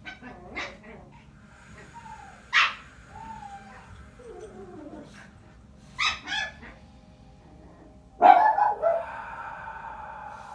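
A pet dog barking sharply a few times: once about two and a half seconds in, twice in quick succession around six seconds, and loudest near the end. Short whines glide up and down in pitch between the barks.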